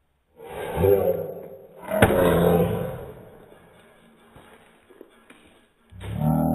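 A man yells twice with the effort of stabbing a knife into a stab-proof vest. A sharp knock comes at the start of the second, louder yell as the blade strikes the vest.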